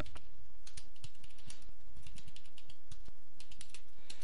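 Computer keyboard being typed on: quick, irregular keystrokes in short clusters as a few short words and line breaks are entered.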